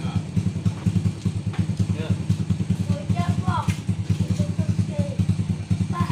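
A small engine running steadily with a rapid, even low pulse, with faint voices in the background.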